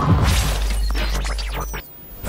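Edited intro sound effect: a glass-shattering crash with scattered crackles over a steady low drone, dropping away sharply just before the end.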